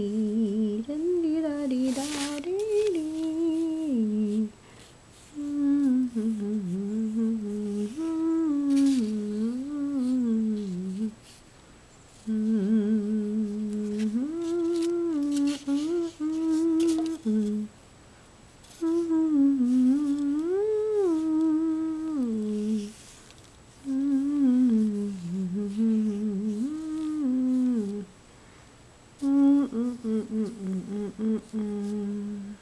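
A person humming a slow, wordless melody in phrases of a few seconds each, with short breaks between phrases.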